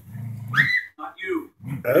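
A dog growling and grunting in play.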